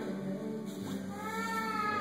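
Background music playing, with a long high held note, sung or played, that comes in a little under a second in and carries on.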